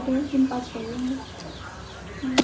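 Chicken clucking: a run of short, low notes in the first second, then quieter.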